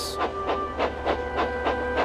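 Background music of held notes over a quick, even rhythmic beat.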